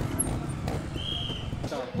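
Trial motorcycle engine running at low revs as the bike climbs a rocky section, with a few faint knocks and a short high-pitched tone about a second in.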